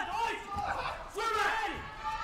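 Voices talking, with no other distinct sound standing out.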